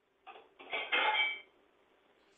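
A brief clinking clatter, a short knock followed by about a second of rattling with a little ringing, heard through a video call's narrow-band audio from a participant's open microphone.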